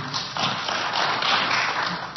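Audience applauding, a dense even patter of clapping that dies down near the end.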